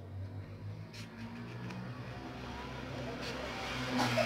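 A motor vehicle's engine running, a low hum that grows gradually louder, with a couple of faint clicks from the ribbon and pin being handled.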